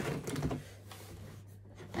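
Small cardboard product boxes being shuffled and knocked together inside a cardboard shipping carton: a quick cluster of light taps and scrapes in the first half second, then quiet with a faint low hum.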